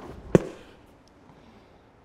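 A single sharp crack about a third of a second in, followed by a brief ringing tail. It stands for the gunshot in the story.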